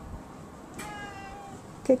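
A house cat meowing once, a single drawn-out call of nearly a second, fairly level in pitch, about a second in.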